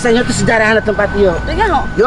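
A woman talking rapidly in a fairly high voice, over a low rumble. A thin steady high tone comes in near the end.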